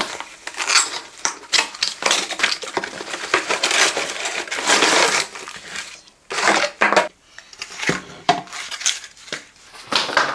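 Cardboard box and packaging being opened and unpacked by hand: irregular rustling, scraping and knocks, busiest over the first six seconds, then a short lull and a few separate bursts of handling noise.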